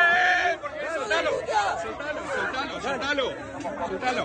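Agitated crowd voices shouting and talking over one another at close range in a scuffle. It opens with one long, high-pitched held cry that breaks off about half a second in.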